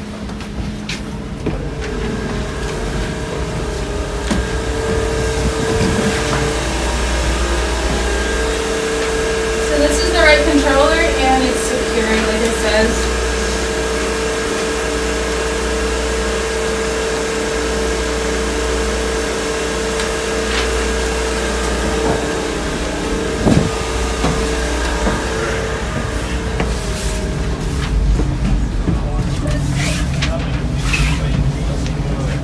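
Steady hum of a ship's machinery and ventilation: a low rumble with a constant mid-pitched tone. Brief voices come about a third of the way in, and a single knock comes later.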